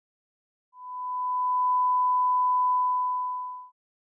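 A single steady 1 kHz sine tone lasting about three seconds, swelling in gently and stopping abruptly: a reference test tone of the kind laid on black before a recorded broadcast.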